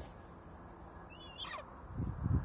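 A single short, high, wavering call from a golden eagle, a thin yelp about a second in, over faint low background noise.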